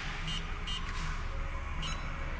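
Three short electronic key beeps from a CNC press brake controller's touchscreen as its buttons are pressed, over a low steady hum.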